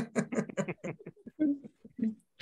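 Laughter: a run of quick, evenly spaced 'ha' pulses that thins out into sparser chuckles in the second second.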